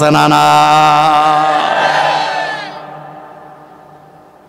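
A man's voice holding one long chanted note into microphones, steady for about two and a half seconds, then slowly dying away.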